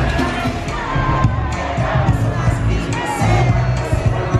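Live band music at a concert, with strong bass and drums, and a crowd loudly cheering and singing along over it.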